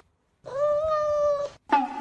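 Kitten meowing: one long, steady mew about a second long, then a shorter one starting near the end.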